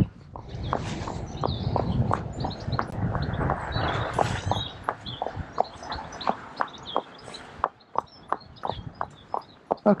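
Unshod horse's hooves clip-clopping on a tarmac lane at a walk, about three footfalls a second. Birds chirp in the background, and a low rumble dies away in the second half.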